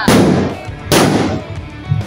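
Two loud blasts about a second apart, each dying away quickly: homemade bamboo cannons being fired.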